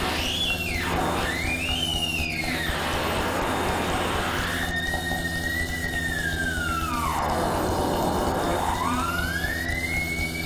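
Live-coded electronic music: synthesized tones sweeping slowly up and down in long arches over a steady low drone, through a club PA.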